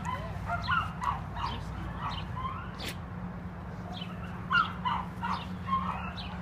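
Dogs whining and yipping in short, high calls, several a second and irregular, with louder ones about half a second in and near the end, over a steady low hum.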